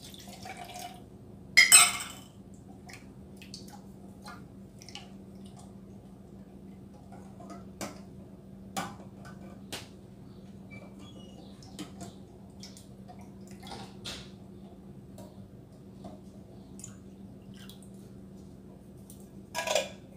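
Kitchen clinks and scrapes as an emptied coconut-milk tin is rinsed out with a cup of water and scraped into a saucepan with a silicone spatula, with dripping water and a loud clatter about two seconds in.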